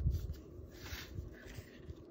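Paper being handled on a tabletop: a dull bump at the start, then a brief soft rustle about a second in as a folded cardstock piece is slid into place on a card base.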